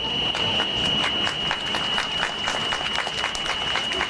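Crowd applauding, many hands clapping irregularly, at the close of a speech. A steady high-pitched tone runs underneath throughout.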